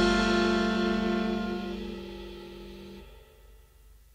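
The last chord of a rock-and-roll song ringing out and fading away, the whole band holding it together. It dies away about three seconds in.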